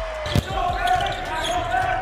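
Basketball bouncing on a hardwood court, one sharp bounce about half a second in, over steady arena background noise.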